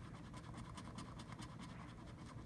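Metal coin scraping the scratch-off coating off a paper lottery ticket in a rapid run of faint, short strokes.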